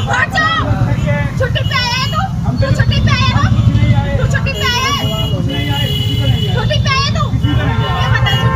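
Raised voices shouting in a heated street argument, in short outbursts about once a second, over the steady low rumble of idling vehicles and traffic.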